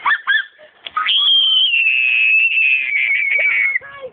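A girl's shriek: a few short high yelps, then one long high-pitched scream, falling slightly in pitch, about three seconds long.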